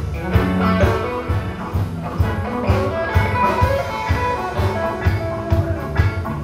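Live band music played through a PA: electric guitars and bass over a drum kit keeping a steady beat.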